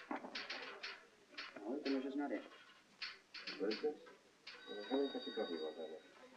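Quiet spoken dialogue. About three-quarters of the way in, a steady high ringing tone of several pitches joins it and runs under the voices.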